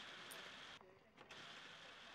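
Near silence: faint room tone that drops out completely for about half a second near the middle.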